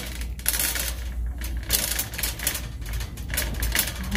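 Handling noise from a handheld phone's microphone: rapid, irregular clicking and rustling over a steady low hum.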